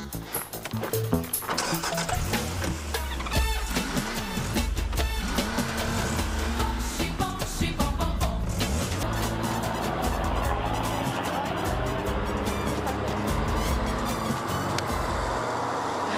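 Background music over the steady low rumble of vehicle engines running; the rumble drops out shortly before the end.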